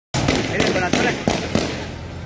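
A rapid series of about five gunshots, roughly three a second, with a voice briefly heard between them.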